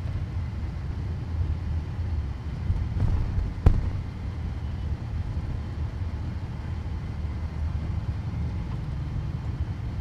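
Low, steady rumble of city road traffic heard from a moving vehicle, with one sharp knock a little under four seconds in.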